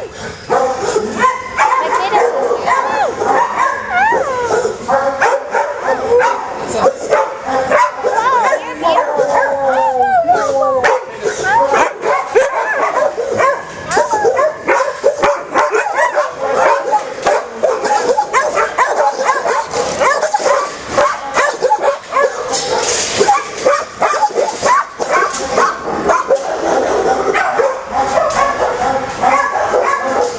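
Many kennelled dogs barking, yipping and whining together without letup.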